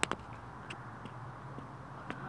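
Handling noise from the camera as it is moved: two sharp knocks right at the start, a fainter tap about half a second later, then a low steady background hum.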